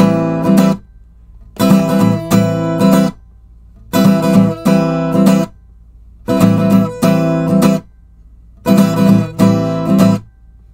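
Steel-string acoustic guitar strummed on an A minor 9 chord fretted at the fifth position, in short groups of several strokes that start about every two and a half seconds, with brief silences between the groups.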